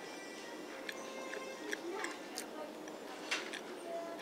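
Background music with the murmur of voices, and a few short sharp clicks scattered through.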